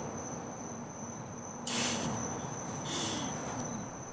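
Crickets chirring steadily in one high, even tone. A short burst of hiss comes about two seconds in and a softer one about a second later.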